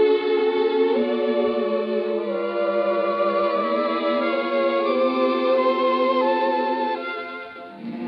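Orchestra playing a slow ballad accompaniment, with long-held, wavering melody notes over sustained chords. The sound fades near the end.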